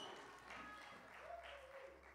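Near silence: room tone in a large hall, with the echo of a man's voice fading away at the start.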